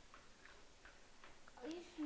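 Near silence with a few faint light clicks of a plastic hook tool working rubber bands on the pegs of a plastic loom. Near the end a voice begins a steady hum.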